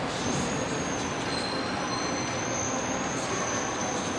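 Steady outdoor background noise with a thin, high steady whistle that comes in and out.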